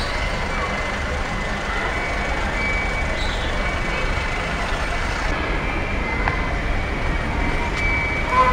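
Steady street traffic noise from vehicles running along a road.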